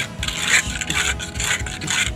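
Hand float rubbing over fresh cement render on a wall edge: gritty scraping strokes, about two a second.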